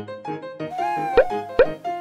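Light background music with a held note, broken by two quick rising 'pop' sound effects about a second and a second and a half in.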